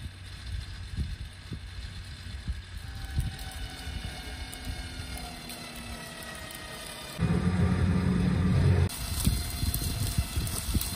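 WARN Axon 35-S electric winch reeling in its synthetic rope under load to drag a pile of dead brush, the motor's whine slowly shifting in pitch. About seven seconds in, a louder low hum sets in for under two seconds. Crackling and snapping follow as the dry brush is dragged.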